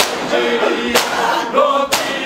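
A crowd of men beating their chests in unison in Shia matam: a sharp collective slap about once a second, three times, over male voices chanting a noha in chorus.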